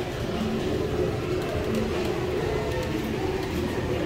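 Steady low rumble of a busy indoor aquarium hall, with indistinct voices of other visitors mixed in.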